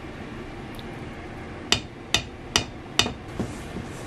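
Four sharp taps in quick succession, about two a second, each with a short metallic ring, as something is knocked against a stainless steel mixing bowl.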